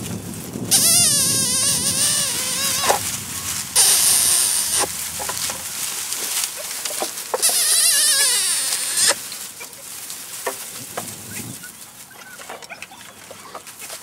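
Puppy crying three times: long, high-pitched, wavering whines, each about a second or more long, with small rustles and clicks in between.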